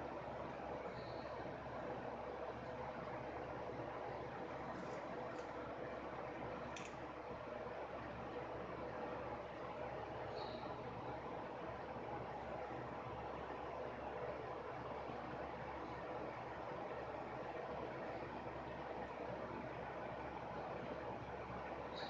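Steady faint hiss of room noise, with a few faint, soft ticks scattered through it.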